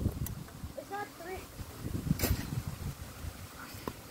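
Faint, distant voices calling across an open field over a low rumble of wind on the microphone, with one sharp click about two seconds in.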